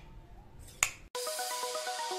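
A single sharp click of a wall switch being flipped by an SG90 micro servo. A little past halfway, background music starts, a melody of short notes.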